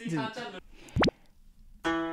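A single quick rising "bloop" sound effect about a second in. Just before the end, background music with a plucked-guitar sound begins.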